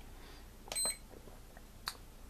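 Tenergy TB6B hobby charger's buzzer giving one short, high beep about a second in as a front-panel button is pressed to step through the menu, followed by a faint button click near the end.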